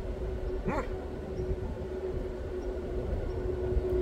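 A dog gives one short bark about a second in, over a steady low hum and background rumble.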